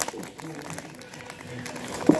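Foil potato chip bag crinkling in quick fine clicks as it is handled, with faint music and voices behind it.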